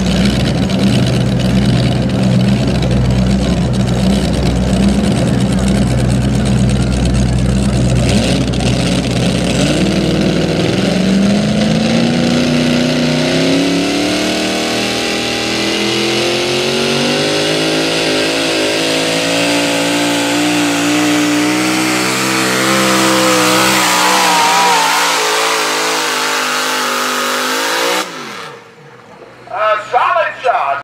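Supercharged big-block V8 of a Pro Mod pulling tractor under full load on the sled: a steady high note for about ten seconds, then a long steady climb in pitch as it pulls down the track, cutting off suddenly about two seconds before the end.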